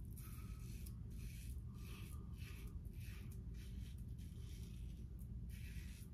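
Double-edge safety razor scraping through lathered neck stubble in short, quick strokes, about three a second. The strokes are faint and scratchy, with brief pauses.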